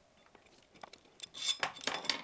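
Light metallic clicks and clinks of a Hope quick-release skewer nut being threaded on by hand against a metal trailer-hitch adapter. The clicks start about a second in and come several times in quick succession.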